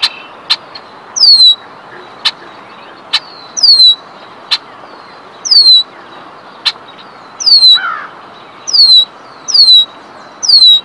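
Red-winged blackbird calling: six high, clear whistles that each slide downward, a second or two apart, with short sharp check notes between them.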